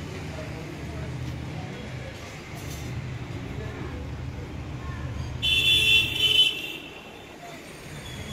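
Steady rumble of road traffic. About five and a half seconds in, a vehicle horn sounds loudly for about a second.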